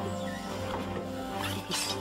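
Film soundtrack music with steady held notes, and a short burst of noisy sound effect about a second and a half in.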